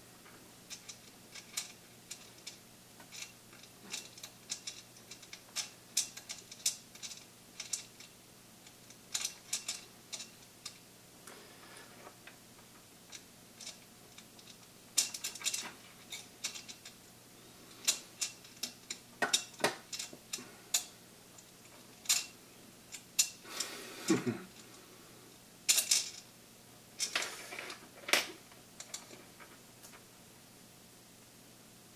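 Irregular small clicks, taps and short rattles of hands handling 3D printer frame parts, cables and small hardware, with louder clusters in the second half.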